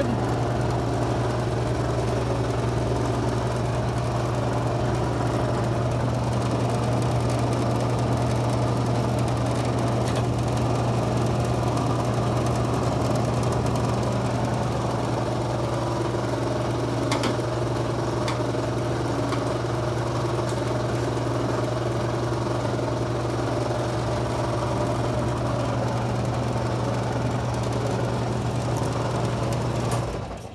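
Hydrovac analyzer brake-booster test machine running steadily with a low motor hum while it holds a brake booster under vacuum and hydraulic pressure.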